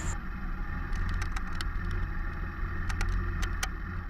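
Motorcycle engine running steadily as the bike rides along a rough gravel road, a low rumble with scattered clicks and rattles.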